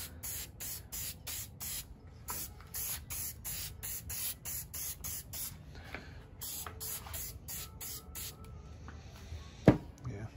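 Aerosol can of Zinsser wax-free shellac sprayed in short, rapid spurts, about three a second, in three runs with brief pauses, laying a sealer coat on a turned wooden dish. A single sharp knock near the end.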